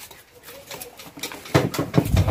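Kitchen knives scraping and cutting the peel off cassava roots by hand: scattered faint clicks and scrapes, growing louder about one and a half seconds in.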